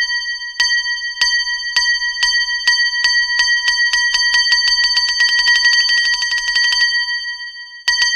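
A small bell struck over and over, each strike ringing on at the same pitch. The strikes speed up from about two a second into a fast roll that stops about seven seconds in, with one more strike right at the end.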